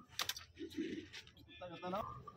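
Milk squirted by hand from a Sahiwal heifer's teats into an aluminium bucket, in a few short spurts. A voice is heard briefly near the end.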